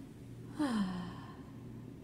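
A woman's voiced sigh about half a second in: a short breathy 'ahh' that slides down in pitch.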